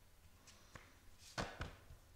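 Tarot cards being dealt onto a cloth-covered table: a few light taps, with two louder ones about one and a half seconds in.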